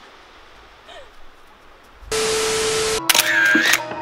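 Edited transition sound effects: a faint, even hiss for about two seconds, then about a second of loud, steady static with a low hum that starts and stops abruptly. A short bright effect with a dipping, whistle-like tone follows, typical of a camera-themed effect, and background music comes in near the end.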